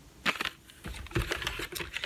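Clicks and crackles of a plastic blister pack of fairy garden figurines being handled: a couple of sharp clicks just after the start, then a quick run of small clicks through the second half.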